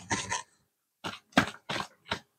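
Tarot cards shuffled by hand: a quick series of short strokes of the cards from about a second in.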